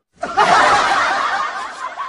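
Canned laughter sound effect: a crowd of voices laughing together, starting just after the opening and fading away.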